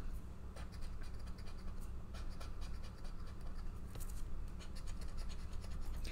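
Scratch-off lottery ticket being scratched with a disc-shaped scraper: a run of quick, irregular rasping strokes over the coating, with a steady low hum beneath.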